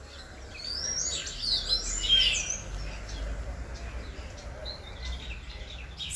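Small birds chirping: several quick, overlapping calls, busiest in the first half and thinning out later, over a faint low background rumble.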